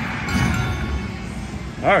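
Casino floor background: a steady low hum of machines and room noise with faint electronic slot-machine tones. A man's voice cuts in right at the end.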